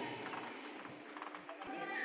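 Table tennis balls clicking off paddles and tables in a large hall, a quick, irregular run of sharp taps from several rallies at once, with voices murmuring underneath.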